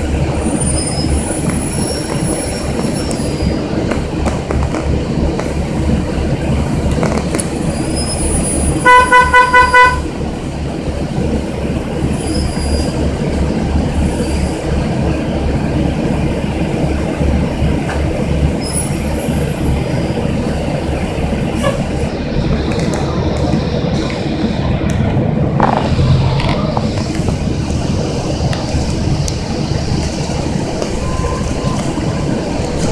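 Inside a moving city transit bus: the diesel engine and road noise run steadily with an even low pulse. About nine seconds in, five rapid, loud beeps sound, with faint high squeals now and then.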